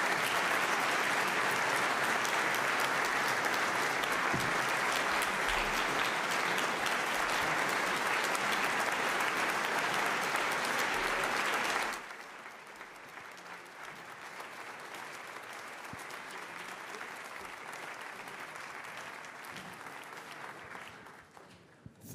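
Audience applauding in a conference hall, loud for about twelve seconds, then suddenly much quieter and dying away near the end.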